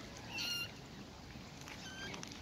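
Eurasian coot chick calling: a short, thin, high-pitched peep about half a second in, and a fainter one near the end.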